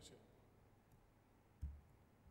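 Near silence, broken by one short, dull low thump about a second and a half in and a faint tick a little before it.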